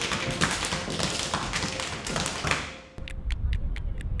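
Dance shoes tapping and stamping on a wooden floor in a dense, very fast flurry of hits during Hungarian folk-dance footwork, fading out near three seconds in. It is followed by an even run of sharp clicks, about five a second.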